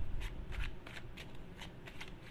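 Tarot cards being shuffled by hand: an irregular run of short, crisp card noises, several a second.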